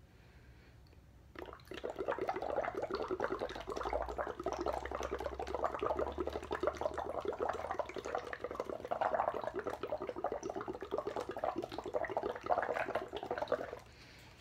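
Breath blown through a drinking straw into a plastic cup of water, bubbling continuously with a rapid, irregular gurgle. It starts about a second and a half in and stops just before the end.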